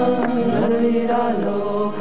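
Devotional chant music: voices chanting on long held notes over a steady held tone, with short percussion strikes about three times a second.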